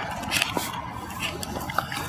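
Handling noise from gear being moved in a scooter's under-seat trunk: rustling with a few light clicks. Under it runs a steady hiss of highway traffic noise that has been filtered in editing.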